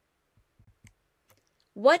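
Near silence broken by a few faint, short clicks in the first second or so, then a voice starts speaking just before the end.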